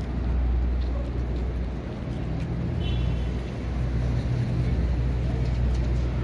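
City street traffic: a steady low engine rumble from cars and a bus on the road.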